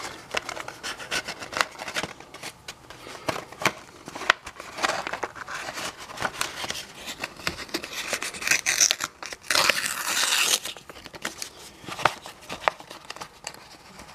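Taped paper mailing envelope being torn open by hand: irregular crinkling, rustling and ripping of paper, with a longer, louder rip about ten seconds in.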